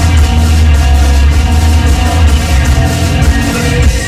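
Hard rock band playing live: electric guitars, bass and drum kit, with a change to a new section of the song near the end.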